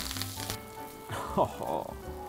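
Pork patties sizzling in butter in a frying pan, the hiss strongest in the first half second and then fading lower.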